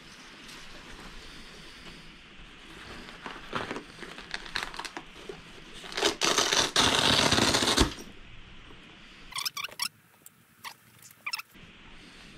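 Rustling and handling of a padded fabric telescope backpack. A louder scraping noise lasts about two seconds past the middle, and a few sharp clicks come near the end.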